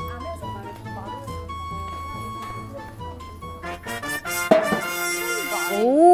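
Background music laid over the edit, with a steady low beat. About four seconds in a short rising effect leads into a brighter jingle.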